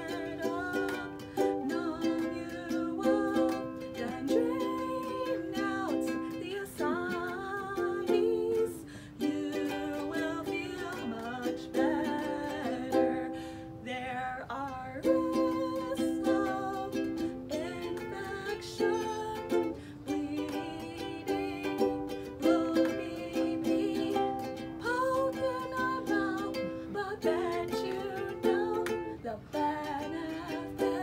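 Ukulele strummed in chords, accompanying a woman singing a melody.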